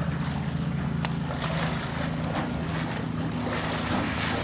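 Polar bear cub splashing and thrashing in a pool, with water sloshing and spraying in repeated short bursts over a steady low hum.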